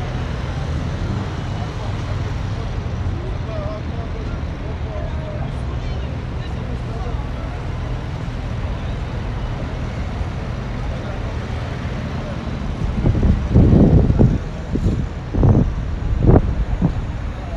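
Busy city-street traffic: a steady low rumble of cars and buses, with passersby talking faintly. Near the end come two loud, ragged low rumbling surges, a couple of seconds apart.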